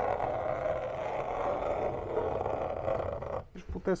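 A compass traced along the curved wall, its pencil scratching a line onto a cardboard template. It makes a steady, rough scraping that stops about three and a half seconds in.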